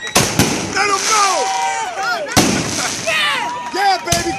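Aerial firework shells bursting with sharp bangs: two close together about a quarter second in, and the loudest a little past halfway, over people's voices.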